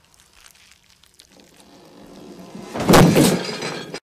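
A low rumble swelling to a loud crash with a shattering, breaking sound about three seconds in, a film sound effect that cuts off abruptly.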